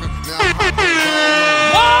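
Hip-hop track with an air-horn sound effect. About half a second in comes a blare that falls in pitch and settles into a long held note. Near the end it jumps up to a higher held blast.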